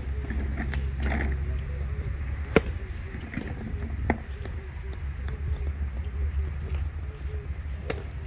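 A golf iron swung in full on a practice mat, with one sharp club-head impact about two and a half seconds in, the loudest sound. A steady low rumble, likely wind on the microphone, runs underneath.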